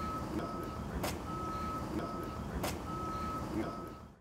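An electronic beeper sounding one steady pitch over and over, each beep about half a second long. A sharp click comes about every second and a half, and the sound fades out near the end.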